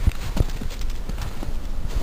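Horse walking on a snowy path, its hooves thudding in the snow, the two loudest steps in the first half second.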